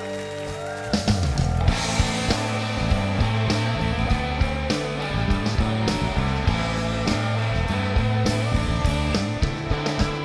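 Live rock band playing an instrumental passage with no vocals: electric guitars, bass and drums. Held guitar chords open it, then about a second in the drums and bass come in hard and the full band plays on with a steady beat.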